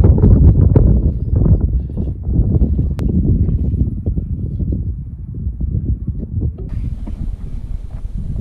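Wind buffeting the microphone: a loud, uneven low rumble throughout, with one sharp click about three seconds in.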